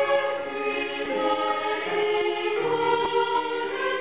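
Women's choir singing in sustained multi-part harmony, moving to a new chord with lower voices entering about two-thirds of the way in.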